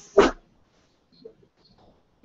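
A single short, loud animal call, bark-like, about a fifth of a second in.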